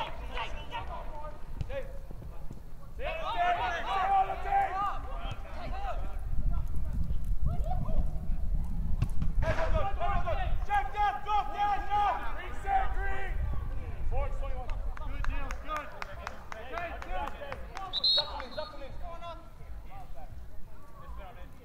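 Voices shouting and calling across an outdoor soccer field in two main spells, over a steady low rumble. A few sharp taps come near the end.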